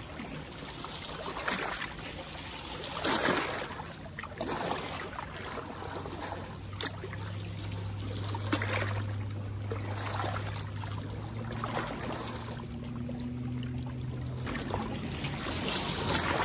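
Small waves lapping and splashing against a rocky shoreline, a wash every second or two. A low steady hum runs under them through the middle and cuts off near the end.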